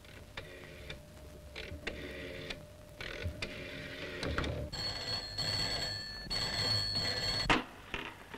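After a few seconds of softer, intermittent buzzing, a desk telephone bell rings loudly in two long rings with a short break between them. About seven and a half seconds in, a sharp clatter follows as the receiver is lifted.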